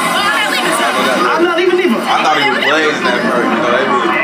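Speech only: several voices talking over one another.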